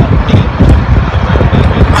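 Loud, steady low rumble of outdoor background noise, with no distinct events.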